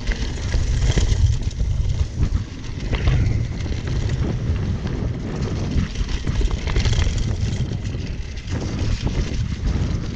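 Wind buffeting the microphone of a fast-moving cross-country mountain bike, with its tyres rolling through dry fallen leaves and short clicks and knocks from the bike jolting over the trail.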